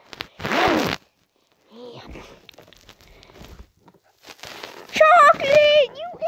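A child's high-pitched play voice making wordless sounds: a loud breathy burst right at the start and a drawn-out, wavering sung-like sound near the end. In between there is faint handling noise.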